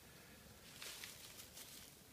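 Faint rustling and crackling of dry leaves and compost in a worm bin as a gloved hand picks through it, strongest about a second in.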